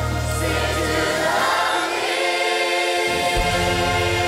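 Large church choir of adults and children singing a gospel-style worship song with instrumental accompaniment. The bass drops out about a second in and comes back shortly before the end.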